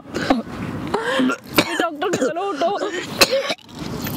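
Voices making wavering, pitched vocal sounds in short stretches that the recogniser did not turn into words, with a couple of sharp clicks in between.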